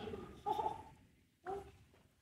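Faint human voice sounds without clear words: a drawn-out murmur or hum in the first second and a short one about a second and a half in.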